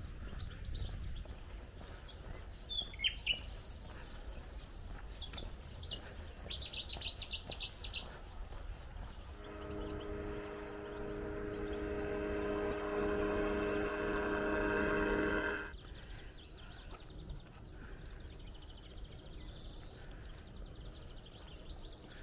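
Small birds chirping at dawn. About ten seconds in, a steady engine drone grows louder for some six seconds and then cuts off suddenly.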